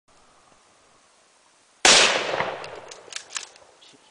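One loud blast about two seconds in, a Mosin-Nagant rifle shot at a Tannerite target, trailing off in a long rolling echo over the next two seconds. Two sharp cracks follow near the end.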